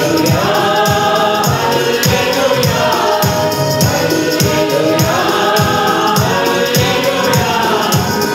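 Mixed choir of women and men singing a Telugu Christian hymn in unison through microphones, over instrumental accompaniment with a steady percussion beat.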